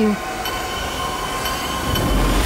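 A rushing noise that swells and gathers a low rumble near the end, over a steady held musical drone, cut off abruptly at the scene change: a dramatic transition sound effect.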